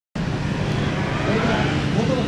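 Honda NSR250R's two-stroke V-twin engine running steadily at idle.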